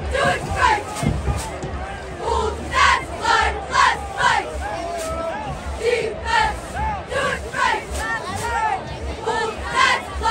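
Football crowd and sideline yelling: many voices shouting at once in short, overlapping bursts.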